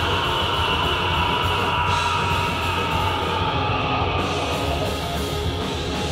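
Live rock band playing loudly, electric guitar over bass and drums, in a fast, heavy song.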